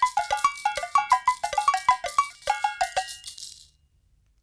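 Title jingle of quick pitched taps, a spoon striking glassware and a cup in a rapid melody, several notes a second. The taps stop about three seconds in, and the last note rings out and fades.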